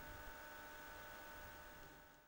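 Near silence: a steady hiss with a few faint, steady hum tones, fading out near the end.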